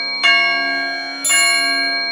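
Instrumental intro of a Hindi devotional bhajan: a bell is struck twice, about a second apart, each stroke ringing on over a steady low drone.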